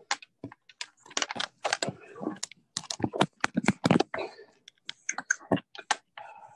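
Rapid, irregular clicking and tapping close to a computer microphone on a video call, like typing or a device being handled.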